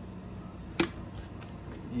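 The last of a can of beer being poured into a full pint glass under its foam head. There is one sharp tap a little under a second in, then two faint ticks.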